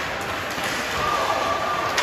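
Ice hockey play in an echoing indoor rink: skates scraping on the ice and stick-on-puck knocks, with a voice calling out in the second half and a sharp knock at the very end.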